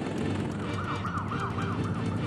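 Title-sequence music for a TV news programme with a steady beat. About half a second in, a siren-like yelping effect joins it: quick pitch sweeps repeating about five times a second.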